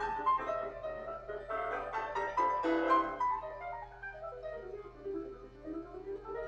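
Fast, note-dense solo piano music: a recording rather than the upright piano in view. It is loud and busy for the first three seconds, then lighter and quieter from about four seconds in.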